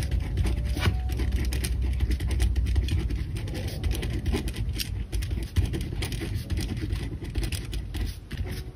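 Pen writing on lined notebook paper: quick scratchy strokes and small taps of the nib, close to the microphone, over a low steady rumble that fades about halfway through.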